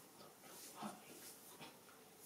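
Near silence: room tone, with two faint short sounds, one just under a second in and a fainter one about a second and a half in.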